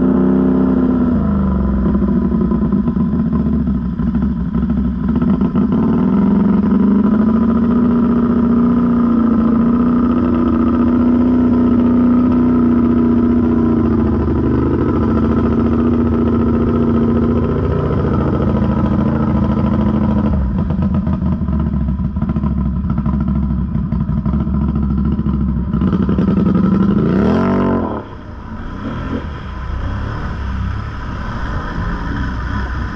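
Can-Am Renegade ATV engine running under load through deep muddy water, its note rising and falling with the throttle. Near the end it revs sharply up and back down, and then runs quieter.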